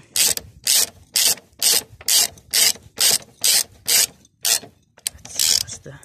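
Socket ratchet wrench tightening a nut on a moped's wheel hub: about ten quick clicking strokes at a little over two a second, a brief pause, then one longer stroke near the end.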